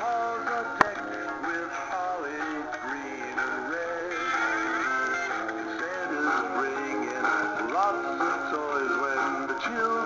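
Animated dancing Santa Claus toys playing their recorded Christmas songs: music with a synthesized male singing voice, with a sharp click a little under a second in.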